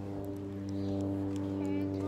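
Steady low machine hum at one constant pitch, unchanging throughout, with a faint voice briefly near the end.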